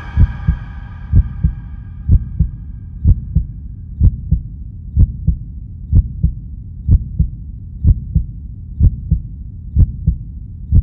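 Heartbeat sound effect: slow, steady double thumps, about one lub-dub a second. The ringing tones of a chord fade out over the first few seconds.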